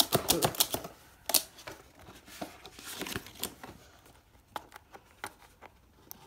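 Clear hard-plastic and cardboard packaging being handled: a quick run of clicks and taps in the first second and a half, then scattered taps.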